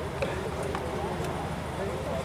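Indistinct murmur of voices in a gathering, over a steady low hum, with about three faint taps in the first second and a half.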